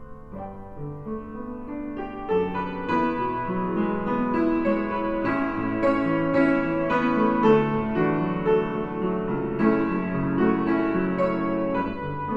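Upright acoustic piano playing a hymn arrangement in chords, starting softly and swelling louder and fuller about two seconds in.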